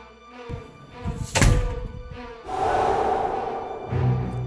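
A heavy thud sound effect of a door being kicked open, about a second and a half in, set in dramatic music. It is followed by a sustained noisy rush.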